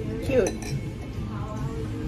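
A brief clink of tableware about half a second in, over restaurant chatter and background music.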